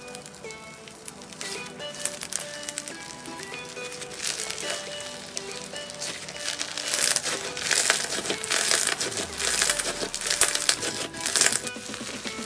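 Slime crackling and crinkling as it is stretched and squeezed by hand, the crackles thickening and loudest in the second half. Melodic background music plays throughout.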